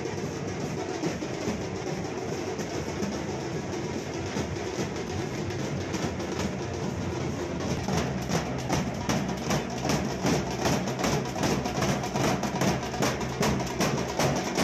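A procession drum band of large double-headed bass drums beaten with plastic-pipe sticks, playing a fast, steady beat. About eight seconds in, the strokes become louder and sharper.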